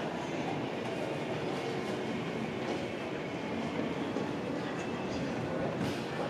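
Steady low rumbling background noise of a busy building interior, with no single event standing out.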